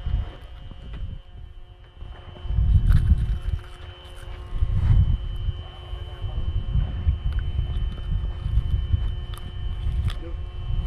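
Wind buffeting the microphone on a small fishing boat at sea, in gusts that swell and fade with the loudest about three and five seconds in, over a faint steady hum.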